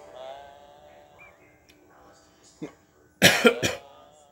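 A person coughing: one short cough a little past halfway, then three quick coughs in a row near the end, much louder than the faint music and voices underneath.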